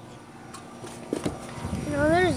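Low steady hum of a car cabin with a few short knocks a little past halfway, then a child's voice starting just before the end.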